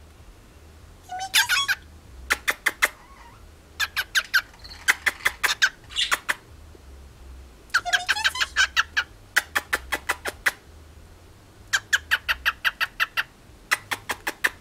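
Cockatiel calling in runs of quick, short, sharp chirps, with a rising whistled note about a second in and again about eight seconds in.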